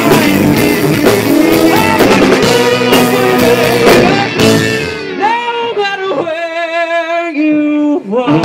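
Live blues-rock band playing: electric guitars, drums and bass. About five seconds in the band drops out, leaving one held note with vibrato, and the full band comes back in at the very end.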